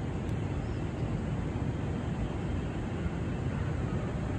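Steady low rumble of outdoor city ambience heard from a high balcony, with no distinct events.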